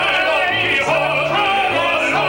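Two men singing a musical-theatre duet in a full, operatic style with vibrato, over instrumental accompaniment with a moving bass line.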